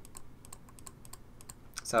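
Computer keyboard typing: a quick, irregular run of key clicks, several a second.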